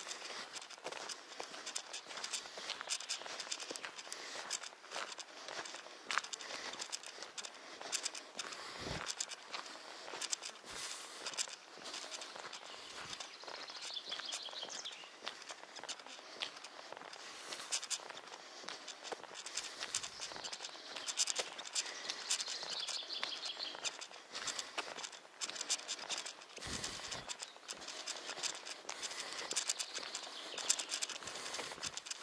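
Footsteps walking along a cracked, weed-grown asphalt track, with small birds chirping in the trees a few times and a couple of low thumps.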